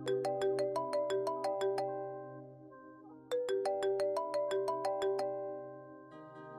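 Smartphone ringtone: a quick melody of bright chiming notes, played twice, the second time starting about three seconds in.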